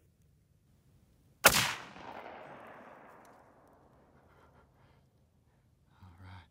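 A single gunshot about a second and a half in, followed by an echo rolling back off the surrounding hillsides and fading over about three seconds.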